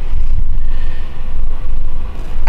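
Loud low rumble of microphone handling noise, with no speech over it.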